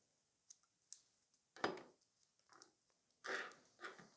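Faint, scattered light clicks and taps of long acrylic nails and a press-on nail tip being handled and pressed onto a display, with a brief soft rustle near the end.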